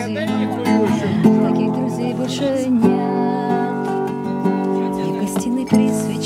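Acoustic guitar being strummed as song accompaniment, with the chord changing a few times.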